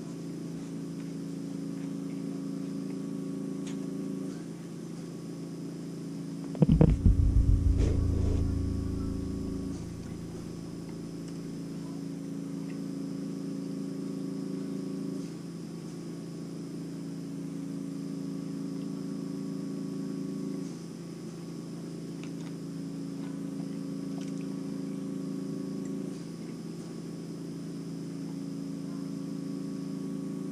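A steady low hum that steps slightly up and down in level every few seconds, with a loud low thud and rumble about six to seven seconds in that dies away over a few seconds.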